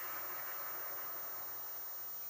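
Steady, even hiss from VHS tape playback, with no speech or music in it.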